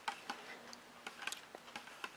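Metal spoon stirring yogurt in a thin plastic cup: faint, irregular clicks and scrapes of the spoon against the cup as the fruit is mixed into the yogurt.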